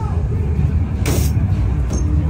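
Deep, steady rumbling ambient soundscape of a haunted-house attraction, with a short, loud hiss about a second in.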